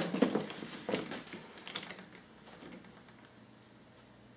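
Handling noise from an airsoft M14 rifle being set down on a cardboard box and handled: a run of light clicks, knocks and rustles in the first two seconds that dies away into quiet.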